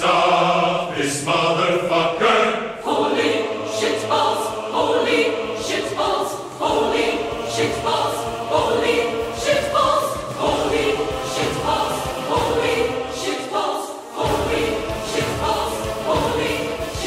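Dramatic film-score choral music: a choir singing over a low bass part, which stops briefly near the end before returning.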